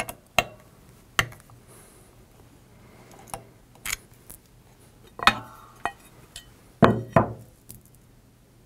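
Small metal tools and parts clinking and knocking on a workbench as they are handled and set down, a few light clicks early, then louder knocks about five seconds in and a pair near the end, some with a brief metallic ring.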